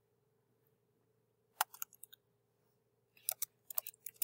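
A few computer keyboard keystrokes over a faint steady hum: one sharp click about one and a half seconds in, then a quick run of light clicks near the end.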